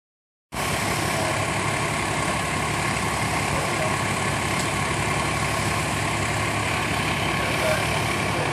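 Fire truck's diesel engine idling steadily close by, starting about half a second in.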